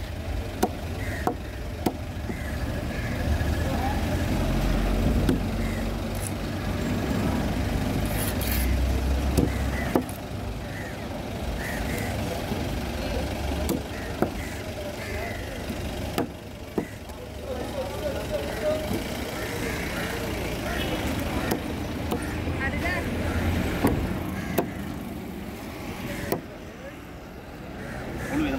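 Irregular sharp chops of a heavy curved knife through yellowfin tuna onto a wooden cutting table, over the low rumble of a passing vehicle engine and background voices.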